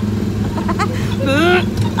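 Small Autopia ride car's engine running with a steady low drone while the car is driven, with women's voices and laughter over it.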